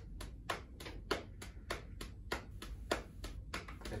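A hand patting the thigh in a fast, even rhythm of about five pats a second as it flips between palm and back of the hand. This is the rapid alternating movements test for cerebellar ataxia, done smoothly and regularly.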